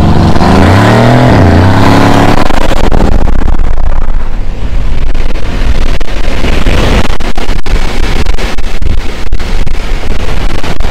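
Mercedes-AMG C63 S V8 engine at full throttle off the line, its pitch climbing and dropping back at each upshift over the first two or three seconds. After that a steady loud rush of wind and road noise at speed.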